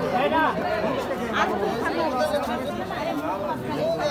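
Several people talking at once: overlapping chatter of a group of adults.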